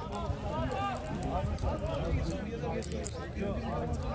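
Several distant voices calling and talking over one another across a football pitch, under a steady low rumble.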